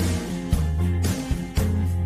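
Country-rock band music between sung lines, no vocals: guitar over steady bass notes, with a beat about every half second.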